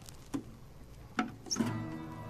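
Acoustic guitar being handled, with a couple of knocks, then a chord strummed about one and a half seconds in that rings on.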